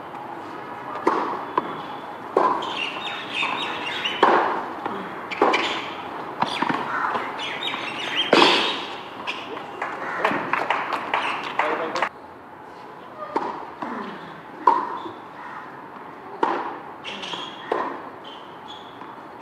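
Tennis rally on a hard court: the ball is struck by rackets and bounces, a sharp pop every second or so for about twelve seconds until the point ends. A few more separate ball impacts follow near the end.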